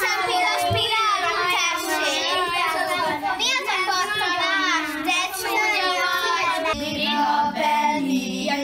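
Several children's voices at once, high and overlapping, drawn out in a sing-song way.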